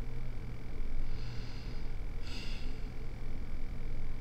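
A woman's two soft breaths, about one and two seconds in, over a steady low hum.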